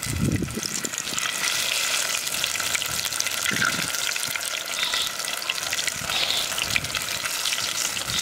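Masala-coated mackerel pieces deep-frying in groundnut oil in a clay pot: a steady sizzle thick with fine crackling pops.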